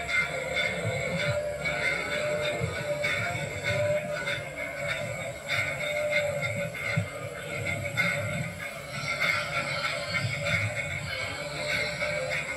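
Music with a steady beat playing from a television set, picked up off the set's speakers in the room.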